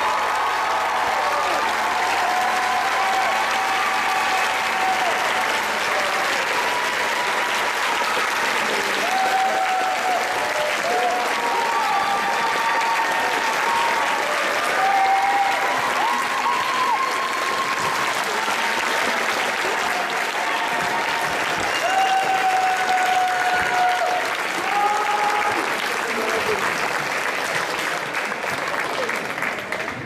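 Audience clapping and cheering, a dense steady applause with shouts and whistles above it, fading near the end.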